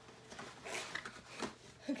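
Cardboard box flaps being pulled open and the packaging inside rustling, in a few short scrapes and crinkles.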